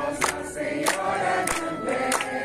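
A crowd singing a Portuguese hymn to Our Lady, with hands clapping in time, three claps in two seconds.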